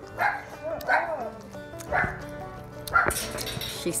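Dogs barking, a short bark about once a second, four in all.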